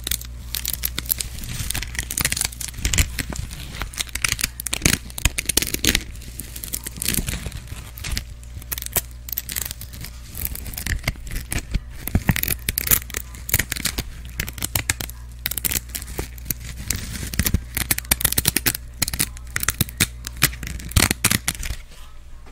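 Fingernails rapidly scratching and tapping a black textured pad held right against a condenser microphone, a dense, irregular stream of crackly scratches and ticks. It thins out at the very end.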